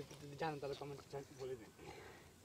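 A faint person's voice in short, broken syllables, well below the level of the narration.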